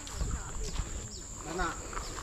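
A steady high-pitched insect drone runs throughout, with a few short bird chirps over it.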